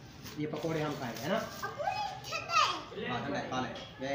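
Toddlers' voices babbling and calling out in high, sliding tones, with some quieter talk around them.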